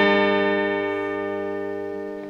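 Electric guitar chord left ringing, its sustained notes slowly fading away.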